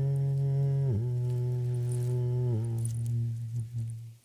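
A man humming a sustained low note that steps down in pitch about a second in and again about two and a half seconds in, then fades out near the end.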